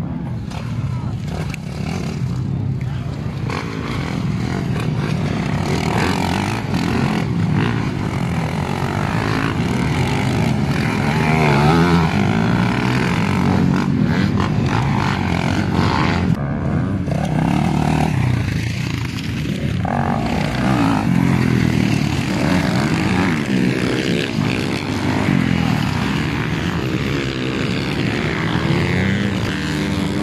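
Motocross dirt bike engines revving hard as several bikes pass and take a jump one after another, the engine pitch rising and falling as the riders work the throttle.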